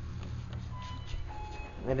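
Electronic chime from a KONE MonoSpace 500 lift's landing signal: two short beeps, the second a little lower than the first, over a steady low hum.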